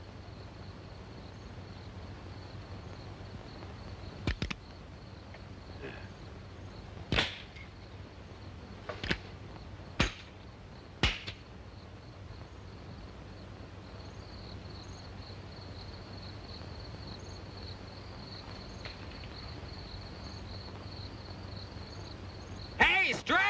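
Crickets chirring steadily in a film's night ambience, with a handful of sharp clicks or knocks: a quick double one about four seconds in, then single ones spaced a second or two apart until about eleven seconds in.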